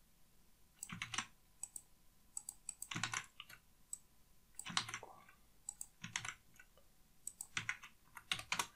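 Computer keyboard typing, fairly faint, in short bursts of key clicks with brief pauses between them, as a line of script is entered.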